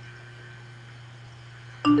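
A steady low hum, then near the end a rising three-note electronic chime from iTunes, the signal that the song's conversion to an AAC version has finished.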